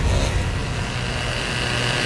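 A loud, steady low rumble with a thin high whine that comes in about a second in.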